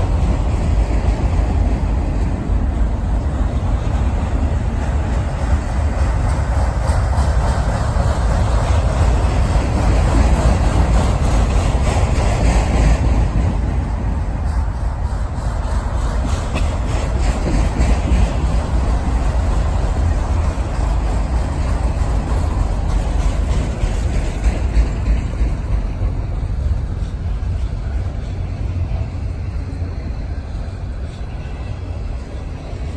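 Freight train's autorack cars rolling slowly past on the rails: a steady, loud rumble of steel wheels with a running clatter of rapid clicks from the wheels and rail joints.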